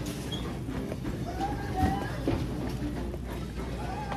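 Grocery store ambience: a steady low hum with faint, indistinct background voices and a couple of light knocks about two seconds in.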